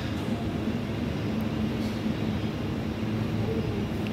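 Steady background noise: a low hum with an even hiss above it, unbroken throughout.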